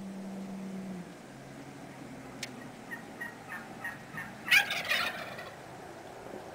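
Turkeys calling: a run of short, evenly spaced calls, then a loud rapid gobble about four and a half seconds in.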